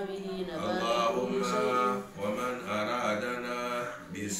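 A man's voice chanting Quranic Arabic verses in a melodic, drawn-out recitation, with a short breath pause about two seconds in.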